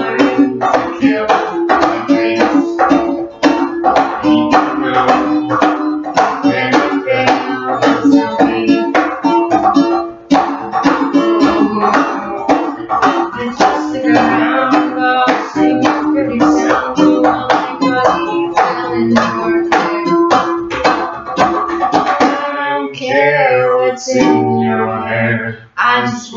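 Ukulele strummed in a quick, steady rhythm.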